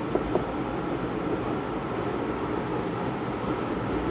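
Steady mechanical hum of room cooling in a small room, with a few faint marker strokes on a whiteboard near the start.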